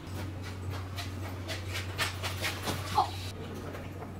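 Rapid panting breaths over a low steady hum, with a brief whine about three seconds in.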